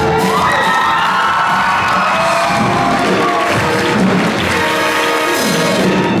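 Audience cheering and whooping over a pit orchestra playing show music, with a rising shout early on.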